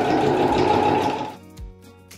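Electric domestic sewing machine running steadily as it stitches heavy truck tarpaulin, stopping about a second and a half in. Soft background music follows.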